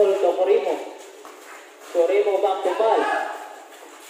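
A man's voice speaking in two short stretches with a pause of about a second between them.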